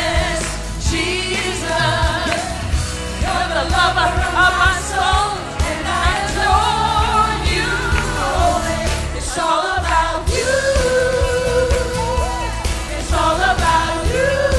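Church praise-team singing into microphones over instrumental accompaniment with a steady beat. About ten seconds in, a singer holds one long note for a few seconds before the singing moves on.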